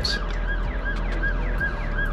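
Electronic siren warbling rapidly, its pitch rising and falling about five times a second, over a low steady hum.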